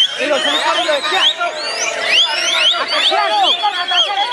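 White-rumped shamas (murai batu) singing: a loud, unbroken tangle of rapid whistled phrases, sharp rising and falling glides and short trills, several birds overlapping.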